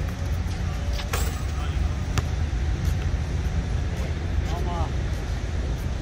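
A basketball in play on an outdoor court: a few sharp knocks, the strongest about a second in, over a steady low background rumble.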